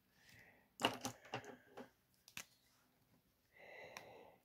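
Faint handling of paper play-money notes being slipped into a binder's clear pocket: a few short rustles and clicks in the first half. Near the end, a brief scratchy scribble of a marker pen on the plastic-covered savings-challenge sheet.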